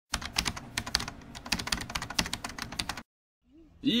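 Computer keyboard typing: a quick, uneven run of key clicks lasting about three seconds, then cutting off abruptly.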